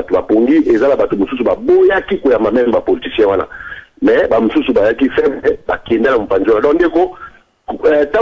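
A person speaking over a telephone line, the voice thin and narrow, with short pauses about four seconds in and near the end.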